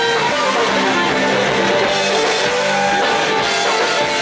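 Live Occitan folk band playing dance music at a steady, even loudness.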